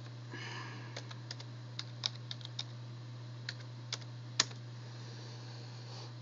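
Computer keyboard being typed in a run of irregular, separate key clicks, logging in as root at a FreeBSD text console.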